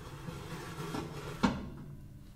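Low steady hum of a running oven, with one sharp knock about one and a half seconds in.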